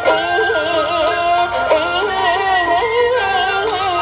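Vietnamese chèo-style song: a sung melody with a wavering, ornamented pitch over instrumental accompaniment.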